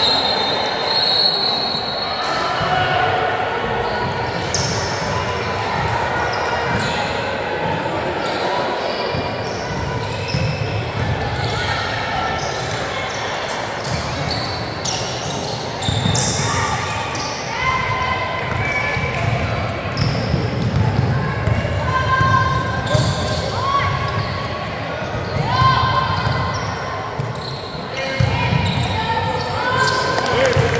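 A basketball bouncing on a hardwood gym floor during play, with players' and onlookers' voices calling out and echoing around the large gym.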